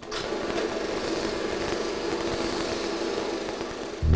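A small motor running with a steady, dense buzz and a very fast rattle; it starts suddenly.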